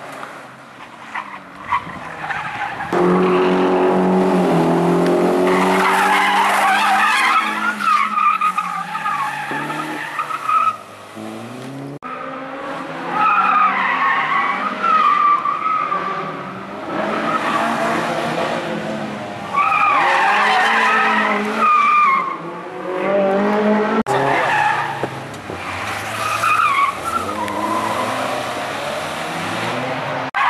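Small hatchback race car's engine revving hard and dropping back as it is driven through tight turns, with tyres squealing as it slides. The sound breaks off abruptly twice where shots are cut together.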